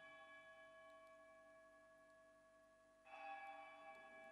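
A faint altar bell, struck and ringing out with a clear, lasting tone, struck once more about three seconds in: the bell strokes that mark the blessing with the Blessed Sacrament at the close of adoration.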